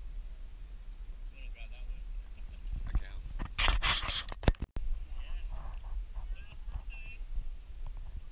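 Faint, distant voices over a steady low rumble on the microphone. About three and a half seconds in, a louder rush of noise lasts about a second and ends in a sharp click and a brief dropout.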